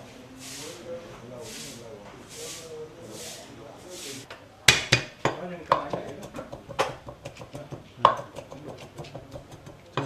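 Kitchen knife chopping shallots and red chilli on a wooden chopping board: a run of sharp, irregular knocks starting about halfway through, two of them louder than the rest.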